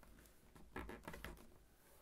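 Near silence with faint rustles and light taps, about a second in, from fingers pressing a fold flat in a small sheet of origami paper.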